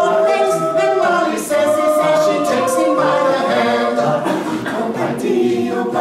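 Small mixed-voice a cappella group of seven singing in close harmony, several voices holding and moving through chords together with no instruments.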